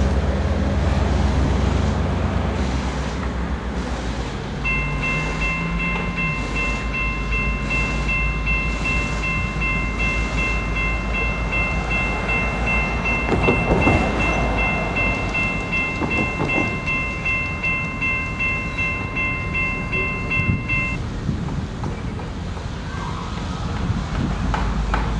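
CSX diesel locomotive's engine rumbling as it rolls slowly toward the camera, with a steady high-pitched tone held from about five seconds in until near the end and a few knocks midway.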